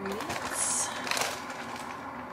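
A cardboard food box being handled and turned over: rustling, with a brief high hiss a little over half a second in and a few light knocks just after one second.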